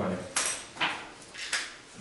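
Three short, sharp noises spread over about a second and a half, the last of them fainter.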